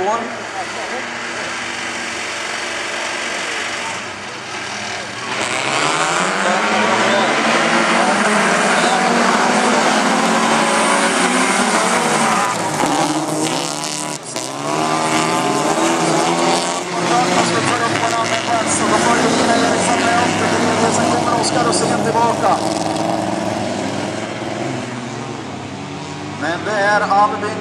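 A pack of folkrace cars' engines revving hard at full throttle as the field races off the start, the engine notes climbing and falling with the gear changes. It grows much louder about five seconds in as the cars come past.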